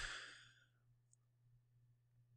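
A man's breath exhaled at the end of a spoken phrase, fading out within half a second, then near silence with a faint steady low hum.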